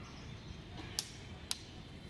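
Two sharp clicks about half a second apart, over a faint steady background.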